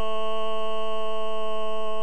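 A man singing a solo into a microphone, holding one long, steady note.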